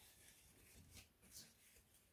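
Near silence with faint, brief rustling of a cross-stitch kit's contents being handled, a couple of soft scrapes about a second in.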